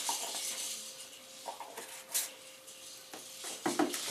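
Product jars and bottles being handled and knocking together, with one sharp clink about two seconds in.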